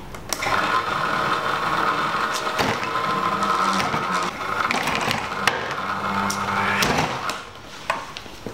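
Small electric pump on a bottled-water jug whirring as it pumps water into a glass. It starts about half a second in, dips briefly a couple of times, and stops shortly before the end.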